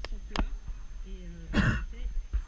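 Horse being ridden in a sand arena: two sharp clicks near the start, a faint voice about a second in, and a short breathy burst, the loudest sound, about three-quarters of the way through, over a low wind rumble on the microphone.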